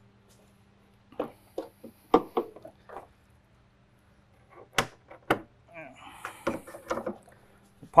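Jeep hood being unlatched and lifted open: scattered metal clicks and knocks from the hood catches and release, with two sharp clicks about five seconds in.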